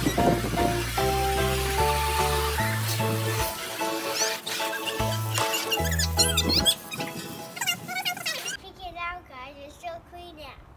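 Background music with held notes over a stepping bass line; the bass drops out about two-thirds of the way through and the music stops shortly before the end.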